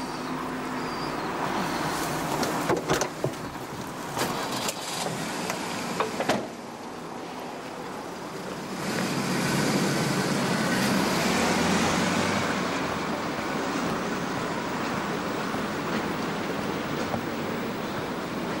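A few clunks of a car door in the first six seconds, then car engine and road noise that swell from about nine seconds in and run on steadily.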